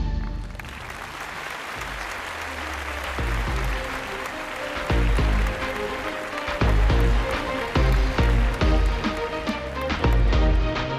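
Audience applause after a song ends, filling the first half. About halfway through, a new piece of amplified music with a heavy, regular beat starts over the applause.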